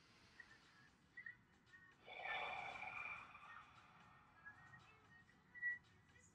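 One slow, deep breath out through the mouth: a soft rush of air starting about two seconds in and lasting about a second and a half, taken as part of a deliberate deep-breathing exercise.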